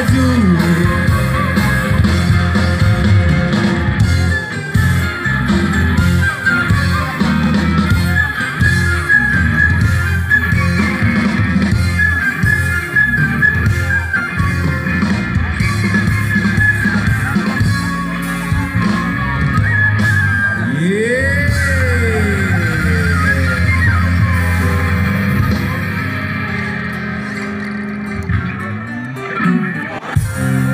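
Live band music through a loud outdoor PA, mostly instrumental with guitar. About two-thirds of the way through there is a single swooping slide in pitch, up then down, and the music gets somewhat quieter near the end.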